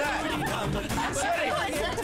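A Deepavali song playing: a sung vocal line over a steady backing, with people's voices chattering over it.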